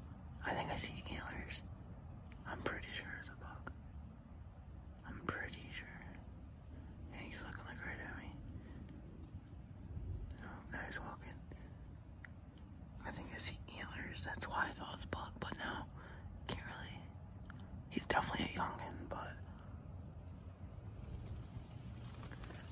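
A man whispering in short phrases, with pauses between them, over a steady low background rumble.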